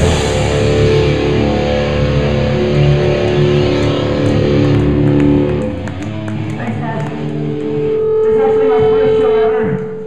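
Live rock band playing loud, with electric guitars, bass and drums, until the song breaks off about halfway through. A single held tone then rings on for the last couple of seconds.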